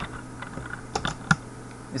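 Computer keyboard being typed on: a few separate keystrokes, unevenly spaced.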